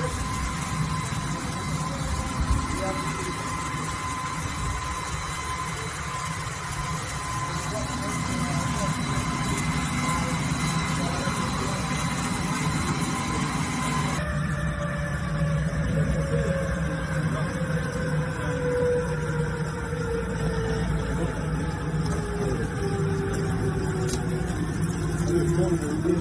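Dazzini PD1500 diamond wire saw running through a block of andesite: a steady machine whine over a low hum. Partway through, the sound changes and a tone slowly falls in pitch.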